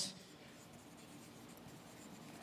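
A marker pen writing faintly on a large white writing board.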